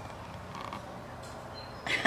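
A steady low hum under faint room noise, with no distinct events.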